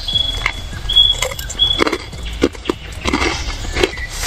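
Close-up crunching and chewing of a Bundeswehr hard ration biscuit (Panzerplatte), in irregular crisp crunches. A thin high tone sounds three times briefly in the first two seconds.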